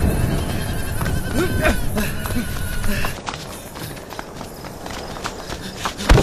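Short shouted cries from men in a fight, over a dense low rumble of scuffling, with the whole mix fading down through the second half.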